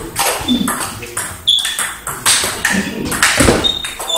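Table tennis rally: the ball clicking sharply off the rackets and the table, about two hits a second.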